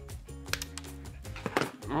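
Background music, with two sharp snips of scissors cutting a plastic tag off a fabric bandana, about half a second in and about a second and a half in.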